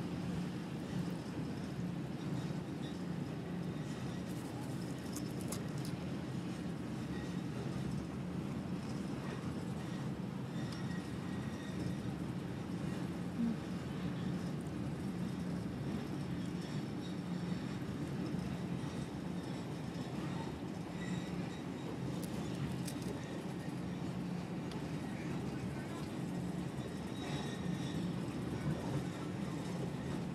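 A train running steadily, heard from inside the carriage: an even rumbling noise with a constant low hum underneath and an occasional faint click.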